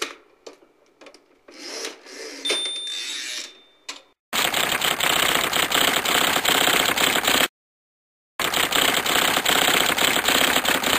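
Scattered quiet clicks and rustling, then about four seconds in a loud, rapid, even clatter of a typewriting machine starts, cuts off abruptly, and after about a second of silence starts again.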